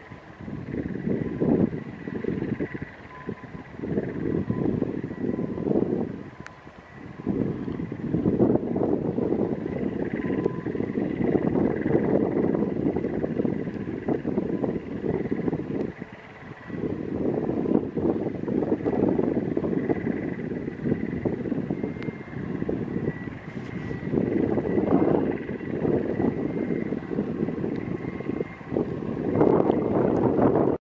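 Gusty wind buffeting the microphone, swelling and easing, with a faint steady high whine underneath.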